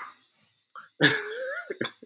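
A man's non-speech vocal sounds: about a second in, a drawn-out voiced sound that rises and falls in pitch, then short sharp bursts near the end, like a chuckle or a cough.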